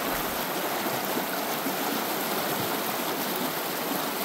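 Shallow creek running steadily over rocks, an even rush of flowing water.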